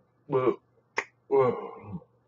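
A man's voice making short wordless syllables while signing, one brief burst and then a longer one that trails off, with a single sharp click between them.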